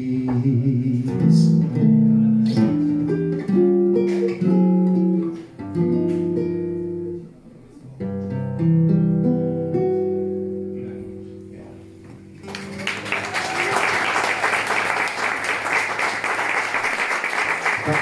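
Two nylon-string acoustic guitars play the closing phrases of a song and end on a chord that rings out and fades. About twelve and a half seconds in, audience applause starts and keeps going.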